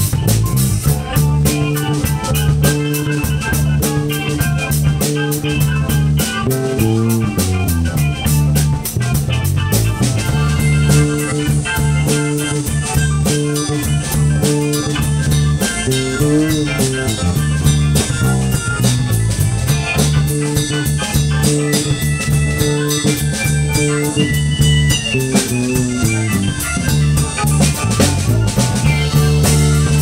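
Live blues band playing a soul cover: electric bass close by, with drum kit and guitar keeping a steady beat.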